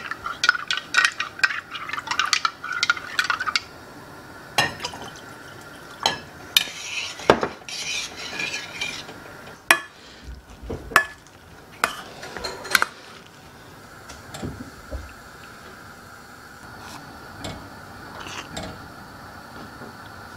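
A fork stirring cornstarch slurry in a drinking glass, with quick clinks, then a metal utensil knocking against stainless steel saucepans. The last several seconds are quieter, while gravy is stirred with a silicone spatula.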